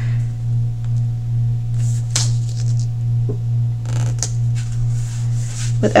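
A steady low background hum, with a few faint paper rustles and soft taps as a paper planner sticker is pressed and smoothed onto the page by hand.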